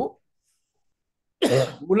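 A man coughs about one and a half seconds in, a sudden harsh burst after a short silence, running straight on into his speech.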